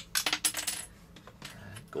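Chrome-gold part of a Leon Kaiser robot toy falling off and clattering on a hard surface: a quick run of sharp clicks with a bright ring, over in under a second.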